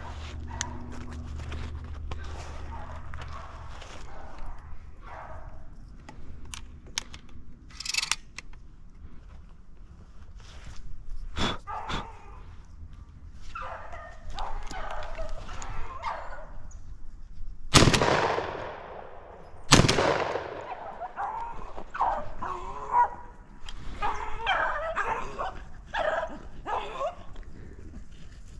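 Beagles baying on a rabbit's trail, with two shotgun shots about two seconds apart a little past the middle; the shots are the loudest sounds.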